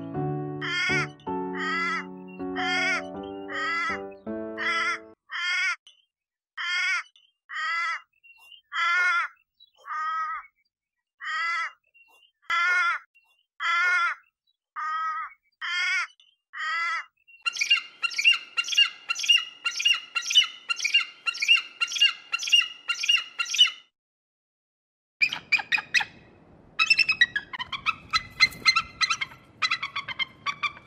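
A bird giving repeated harsh, cawing calls, about one a second, over music that stops about five seconds in. Later the calls come faster, about three a second, and after a brief pause near the end they come in a denser, chattering run.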